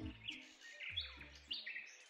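Faint birds chirping in a series of short, separate chirps, with soft low tones underneath.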